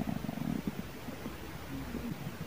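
A human stomach growling from hunger on an empty stomach: a low, wavering gurgling rumble, loudest just at the start and then trailing off into quieter, crackly gurgles.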